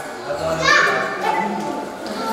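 Voices talking in a large, echoing hall, including high, child-like voices, with music underneath.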